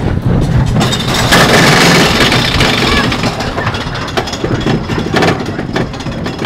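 Small children's roller coaster train rattling and rushing along its steel track, loudest for a couple of seconds starting about a second in.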